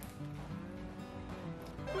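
Soft background music with steady held notes, laid under the footage.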